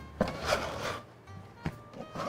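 Dough being worked and cut with a dough scraper on a floured board: a few sharp knocks and a stretch of scraping and rubbing, over soft background music.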